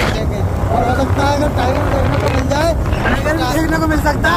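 Motorcycle riding along a paved road: a steady low rumble of wind on the microphone and running noise, with a voice talking over it from about a second in.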